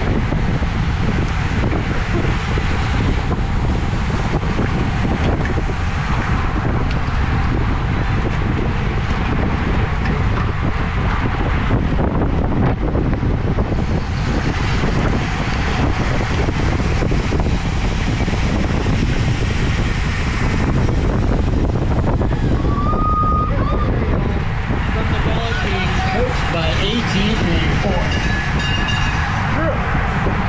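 Steady heavy wind rush buffeting an action-camera microphone on a road bike riding in a pack at about 26 mph. About two-thirds of the way through there is a brief high tone, and near the end some voices cut through.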